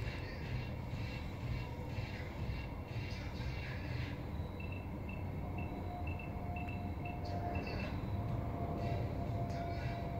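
A steady low rumble of outdoor background noise. Around the middle a faint high beep repeats about twice a second for a few seconds, and a faint steady tone sets in and runs on.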